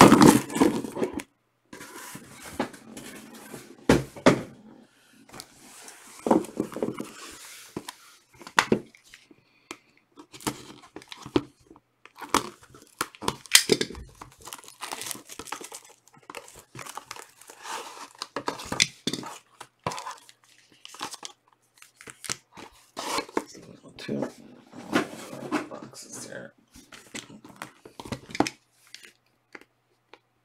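Trading-card hobby boxes being unpacked by hand: cardboard shifting and knocking, and plastic shrink-wrap crinkling and tearing as it is peeled off a box, in irregular rustles and taps.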